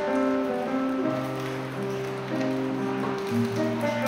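Classical guitar playing a slow, plucked instrumental introduction: a single-note melody over held bass notes, with the bass moving down a step about three seconds in.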